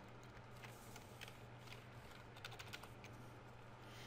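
Faint computer keyboard keystrokes, a few scattered clicks, over a steady low hum.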